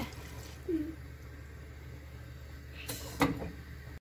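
Boiled white beans tipped into a pot of cooked wheat and liquid, a quiet wet slide with a brief noise about three seconds in, over a low steady hum.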